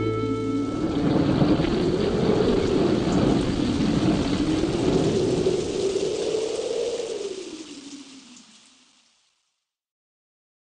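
The song's last chord rings out for about a second, giving way to a thunderstorm sound effect of rain and rumbling thunder under a slow, wavering low howl. It fades out over the last few seconds.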